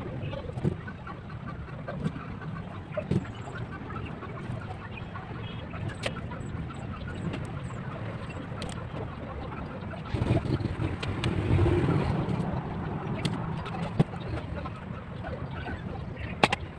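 Light clicks and taps of a metal sculpting tool and fingers working modelling clay on a glass bottle, over a steady low background rumble that grows louder for a couple of seconds about ten seconds in.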